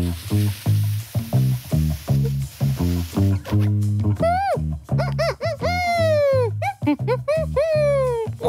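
A long breathy rush of air blown out through cupped hands, over bouncy children's background music with a steady bass pulse. From about four seconds in, a run of swooping whistle-like glides rises and falls over the music.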